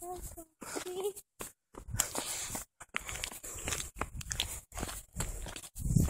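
Wind buffeting and handling noise on a phone microphone while walking, with two short faint voice sounds in the first second.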